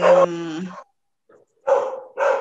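A dog barking a couple of times in short barks, one at the start and one near the end. The first bark falls over a woman's drawn-out hesitant 'eh'.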